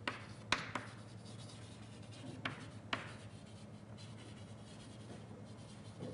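Faint writing on a board: a few sharp taps in the first three seconds, then lighter scratching strokes, over a steady low room hum.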